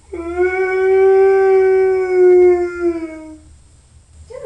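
A man's long, loud wail, one held note of about three and a half seconds that drops a little in pitch as it trails off.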